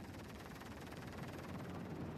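Faint, steady background noise, with no distinct event.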